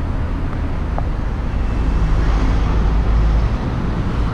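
Road traffic noise in a busy street: a steady rumble of passing cars that grows heavier a little after the middle.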